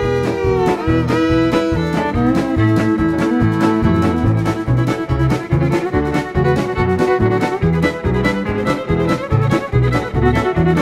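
Country fiddle leading a Western swing band, opening with bent, sliding double-stop notes in the manner of a train whistle, then holding long notes over a steady beat of bass, rhythm guitar and drums.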